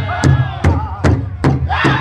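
Powwow big drum struck in unison by a drum group, steady beats about two and a half a second, with men singing together; near the end a high lead voice comes in.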